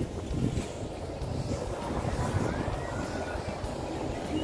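Wind buffeting the camera microphone: a steady low rumble, with faint voices behind it.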